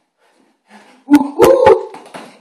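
Boxing gloves smacking a heavy punching bag three times in quick succession, about a second in, under a loud, high-pitched vocal cry that rises and then holds, a comic yelp thrown with a flailing punch.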